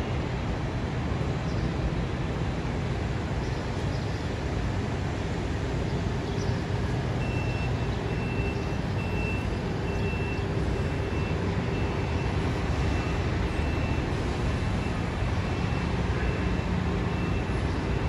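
Steady street traffic with low engine rumble. About seven seconds in, a vehicle's reversing beeper starts up with a steady series of high beeps that runs on.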